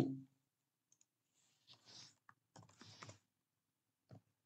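Faint typing on a computer keyboard: a few short clusters of keystrokes, around two seconds in and again near three seconds, as a short word is typed.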